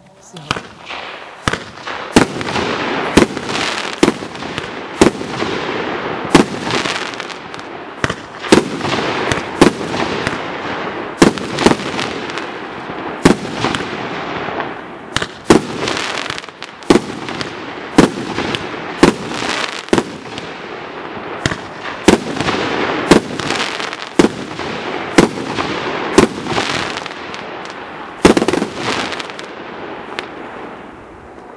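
A 25-shot 30 mm firework cake firing its shots one after another, a sharp bang about every second over a steady hiss from the burning stars. The first bang comes about two seconds in and the shots end near the close, leaving the hiss to fade.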